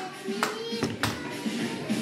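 Three sharp plastic clicks and knocks within about a second, from a plastic hot glue gun being worked and set down on a table, with faint music behind.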